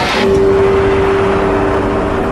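A loud, steady rushing roar from a countdown animation's sound effect. A single held tone comes in just after the start and sounds on through the rest of it.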